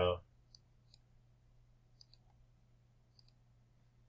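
Computer mouse button clicks, sharp and faint: two single clicks in the first second, then two quick double-clicks about two and three seconds in.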